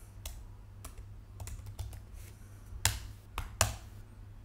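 Typing on a computer keyboard: irregular single keystrokes, with two louder key hits near the end.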